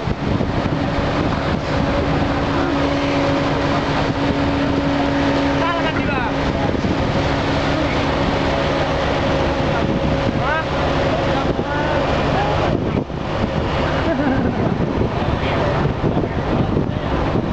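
Ferry's engine running steadily, with the hiss of water and wind passing the boat.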